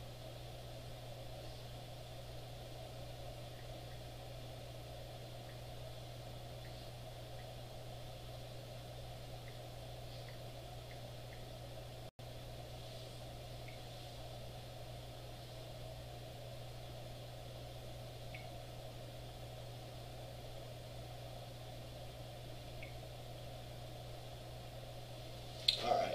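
Quiet, steady room tone with a constant low electrical-sounding hum and a faint even hiss, broken by a few faint scattered ticks. The sound cuts out for an instant about halfway through.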